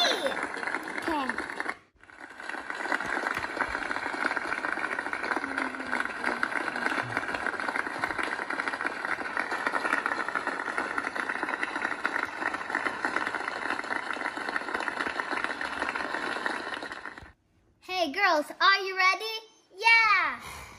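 Many voices talking at once, a crowd's chatter with no clear words, holding steady for about fifteen seconds before cutting off suddenly; a single voice follows briefly near the end.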